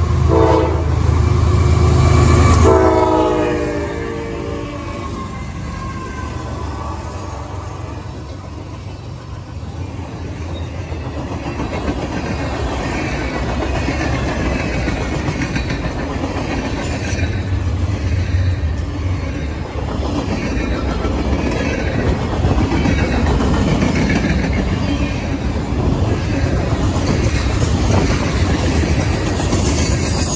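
A CSX ES44AH locomotive's Nathan K5LA horn sounds a loud chord over the low rumble of its diesel engine as it passes, ending about three and a half seconds in. After that the train's freight cars roll by with steady wheel clatter over the rail joints.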